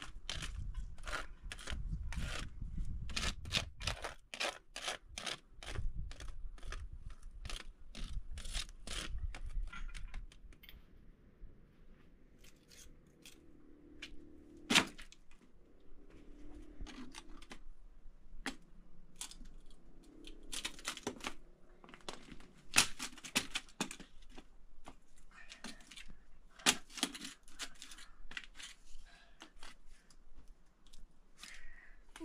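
Dry sticks snapped underfoot on concrete: sharp separate cracks, the loudest about fifteen, twenty-three and twenty-seven seconds in, with scraping and crunching between them. For the first ten seconds or so there is a dense, rapid run of crunching knocks and thumps.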